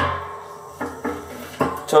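A sharp metal clunk that rings and dies away in the steel drum, then a few lighter knocks, as the smoker's foot-operated bottom air-intake valve is moved from wide open toward closed. Music plays underneath.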